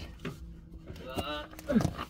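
A man's short wordless vocal sounds, exclamations of effort while squeezing through a tight passage: one about a second in and a shorter falling one near the end. A low steady hum runs underneath.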